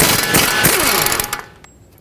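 A 1/2-inch impact gun on a 19 mm socket hammering loose the upper strut-to-knuckle bolt, running loudly for about a second and a half and then winding down.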